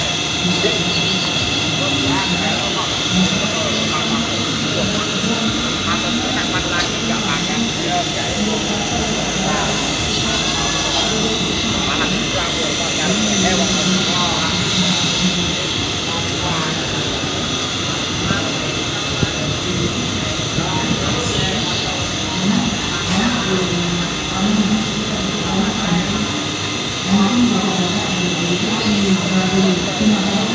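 Steady drone of small palm oil mill machinery, with several constant high whining tones over a rushing noise. People talk in the background, more clearly in the second half.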